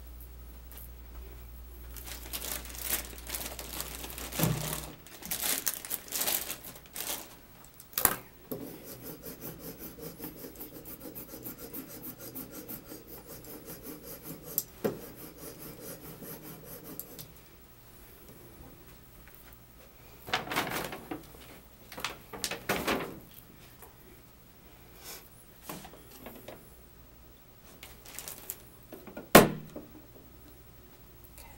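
Rubbing and scraping handling noises on a surface, with a few sharp knocks. In the middle stretch there is a run of quick, regular scraping strokes lasting several seconds. A low hum underneath cuts out about five seconds in.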